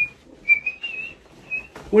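Someone whistling a few short, high notes, with a light knock or two in between.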